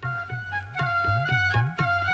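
Indian film background score: held melody notes over a bass line that slides up and down.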